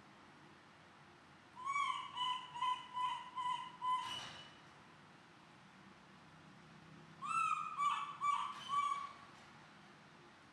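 An animal calling in two runs of short, evenly repeated clear pitched notes, about six in the first and five in the second, a few seconds apart, with a brief noise at the end of the first run.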